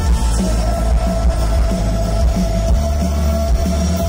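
Live rock band playing loudly: electric guitar, keyboards and drum kit, with one long held note sustained from about half a second in until near the end.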